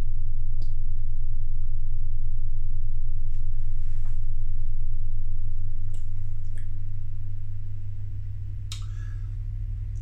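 Washing machine and tumble dryer running in the flat upstairs: a steady low hum that eases off from about seven seconds in. A few faint clicks are heard over it.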